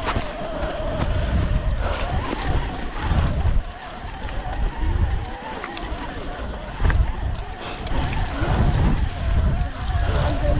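Gusty wind rumbling on a bike-mounted camera's microphone as a mountain bike rolls over a wet, stony track, with faint voices in the background.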